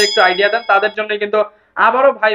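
A bright bell-like ding, a subscribe-button sound effect, strikes at the very start and rings for about a second over a man talking.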